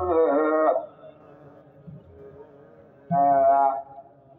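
Ethiopian Orthodox wedding hymn (mezmur) sung in long held notes: a phrase ends under a second in and, after a quieter pause of about two seconds, another phrase comes in near the three-second mark.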